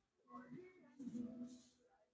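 A faint, indistinct voice, quiet and in the background.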